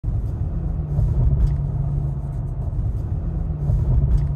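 Car driving at low speed, heard from inside the cabin: a steady low rumble of engine and road noise.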